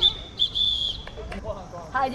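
Two blasts on a referee's whistle, a short one and then a longer one of about half a second, each a single high steady note.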